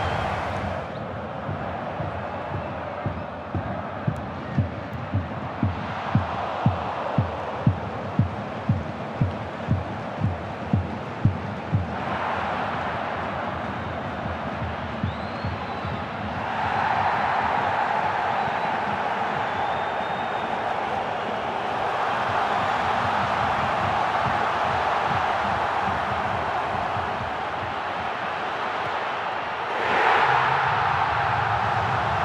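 A football stadium crowd cheering and singing, with a low thump about twice a second between roughly 3 and 11 seconds. The roar swells about 12 seconds in and grows louder again around 17 seconds.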